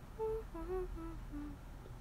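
A young woman humming softly to herself: about five short notes with her mouth closed, stepping down in pitch.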